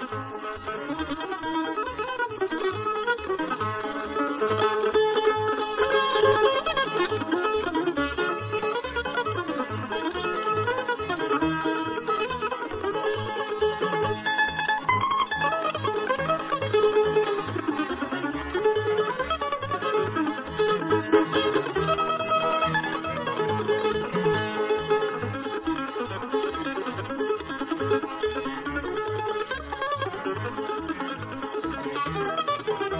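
Bluegrass band playing an instrumental live: mandolin, fiddle, five-string banjo and guitar over an upright bass fiddle plucking a steady beat about twice a second.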